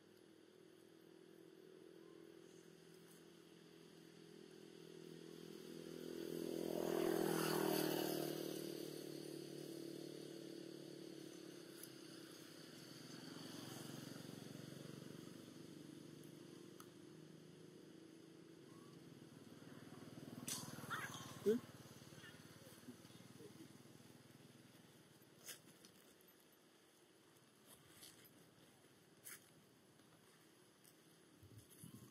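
A motorcycle passing on a nearby road, its engine growing louder to a peak about seven seconds in and then fading away, with a second, quieter pass around fourteen seconds. A few sharp clicks follow later.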